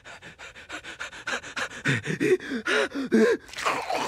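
A man's voice panting fast in excitement, about six short breaths a second, getting louder and more voiced as it goes, then one longer breathy exhale near the end.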